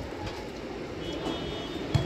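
Steady outdoor background noise at a volleyball match, with a single short thud near the end as the ball is struck.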